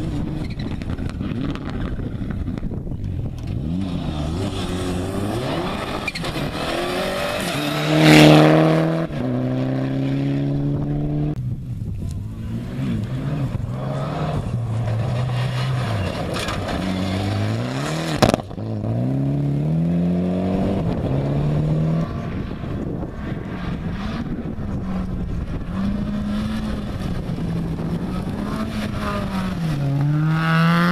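Rally cars at full throttle on a gravel stage, their engines revving up and dropping through quick gear changes as each car passes, with gravel and tyre noise underneath. One pass about eight seconds in is the loudest, and there is a single sharp crack past the middle.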